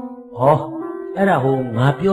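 A voice speaking or chanting in rising and falling phrases from about half a second in, over a steady held musical tone.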